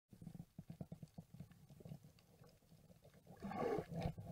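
Muffled underwater sound picked up through a camera housing while diving: soft, irregular knocks and clicks, then a louder rush of water noise about three and a half seconds in.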